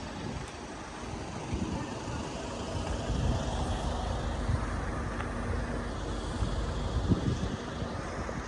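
Outdoor street noise: a steady low vehicle engine hum under wind rumbling on the microphone, with faint voices in the background.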